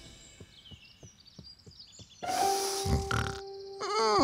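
Soft cartoon footsteps of a pig walking. About two seconds in, a held music note sounds and the pig takes a couple of deep sniffs of the air, picking up a smell.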